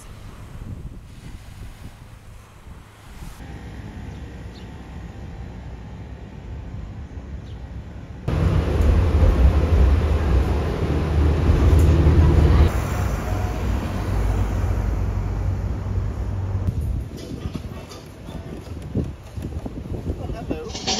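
Low, steady rumble of a city bus's engine and road noise heard from inside the bus. It starts abruptly about eight seconds in, is the loudest sound here, and stops about seventeen seconds in. Before it comes quieter outdoor noise with wind on the microphone.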